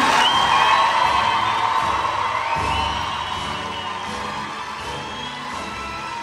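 A crowd of graduates cheering and whooping, loudest at the start and dying down over the next few seconds, with music playing underneath.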